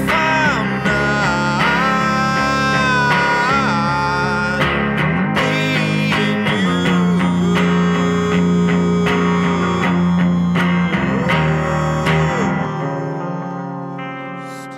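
Solo electric guitar and male singing voice. The voice holds long, wavering notes over strummed chords. Near the end the playing stops and the last chord rings out and fades.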